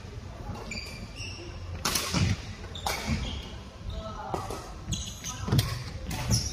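Badminton play in a large echoing hall: a few sharp racket-on-shuttlecock hits and quick sneaker squeaks on the court floor, over a low steady hum of the hall.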